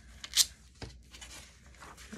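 A magazine page being torn by hand: one short, sharp rip about half a second in, with faint paper rustling around it.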